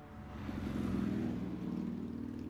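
A car driving at highway speed heard from inside the cabin: a steady engine and road hum that swells up over the first second.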